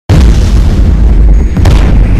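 Countdown intro sound effect: a loud boom that starts abruptly out of silence and carries on as a deep rumble, with a second sharp hit about one and a half seconds in.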